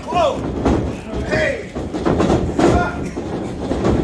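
Wrestlers' bodies thudding and slamming on the ring canvas and ropes, in a string of sharp impacts, under shouts and yells from the ringside crowd.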